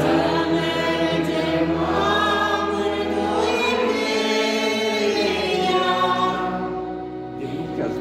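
Church congregation singing a hymn together in many voices, with long held notes and a brief dip for breath near the end.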